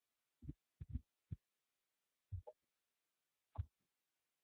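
Near silence broken by about half a dozen faint, short low thumps, scattered unevenly, with a cluster in the first second and a half.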